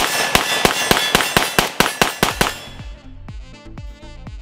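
Polish Tantal rifle in 5.45x39 firing a fast string of about a dozen shots over some two and a half seconds, then falling silent. Background music runs underneath.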